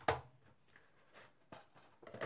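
Plastic Blu-ray cases being handled on a table: a short sharp sound right at the start, then a few faint clicks and taps.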